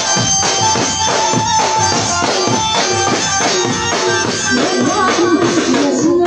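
Live garba band music: a keyboard melody over fast, steady drumming on dhol and tom-style drums.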